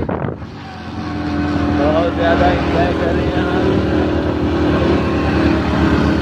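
A motor vehicle's engine running, getting louder over about a second near the start and then holding steady, with voices over it.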